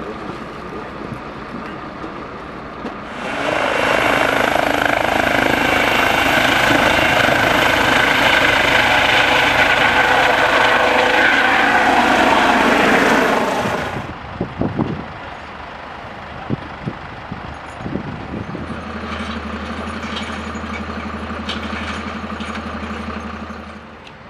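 Eurocopter EC135 rescue helicopter running close by for about ten seconds: loud turbine and rotor noise with a high whine, which cuts off suddenly. After that come a few low knocks, then a steady low engine hum.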